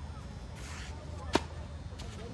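A single sharp pop of a tennis racket striking the ball, about a second and a half in, with a brief scuff of shoes on the clay court just before it.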